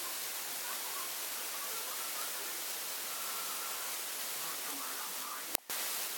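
Steady background hiss of recording noise with faint, indistinct sounds under it. A sharp click and a brief dropout in the audio come near the end.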